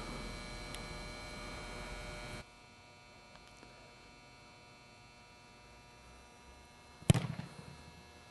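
A steady hum that cuts off abruptly about two and a half seconds in, then a single sharp thud near the end: a football kicked off a tee, its echo dying away in a large indoor dome.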